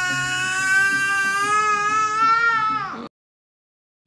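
A young child's long crying wail, held on one pitch and dropping at the end, cut off abruptly about three seconds in.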